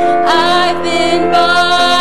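Mixed church choir singing a gospel song, holding long notes that change pitch a couple of times.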